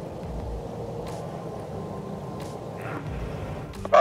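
An engine running steadily in the distance, with gusts of wind rumbling on the microphone now and then.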